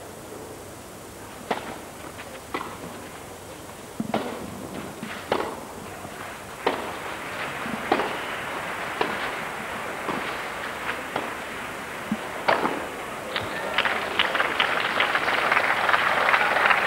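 Tennis rally on a clay court: a ball struck by rackets about once every second and a quarter, a dozen or so hits. Near the end, crowd applause rises as the point ends.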